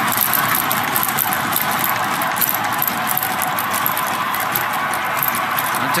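Steady ice-rink arena ambience during a stoppage in play: an even hiss with faint rattling clicks and no clear single event.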